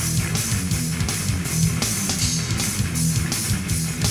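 Hardcore punk band playing an instrumental passage with no vocals: electric guitar, bass and drums, with a steady beat of cymbal hits.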